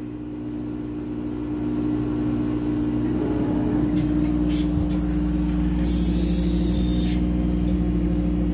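Steady hum of several constant tones from a 50 W CO2 laser engraver running a job, with its water cooling pump, air-assist compressor and exhaust fan all going; the hum grows louder over the first couple of seconds, and a short hiss comes about six seconds in.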